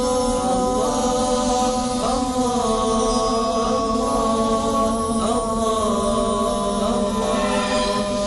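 Vocal chant as title music: layered voices hold long notes and slide to new pitches every second or two, over a steady lower held note.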